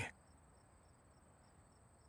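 Near silence, with only a faint steady high-pitched whine and faint regular pulses under it.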